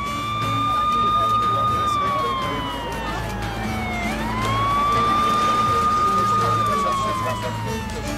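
Ambulance siren wailing through two slow cycles: each rises quickly, holds its high note for about two seconds, then slides down for about two seconds before rising again.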